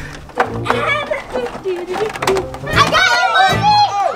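Children's voices calling out in play, loudest and highest near the end, over background music with a steady beat.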